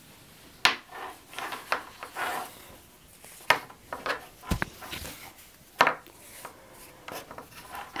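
A denim strap being handled and threaded through its metal slide buckle on a cutting mat: the fabric rubs and rustles, with several sharp clicks of the metal hardware and one low thump.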